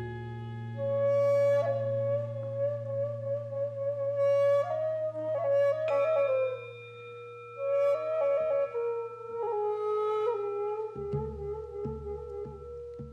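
Korean vertical bamboo flute playing a slow, ornamented melody with bending notes over sustained held chord tones and a low drone. Soft low percussion strokes begin near the end.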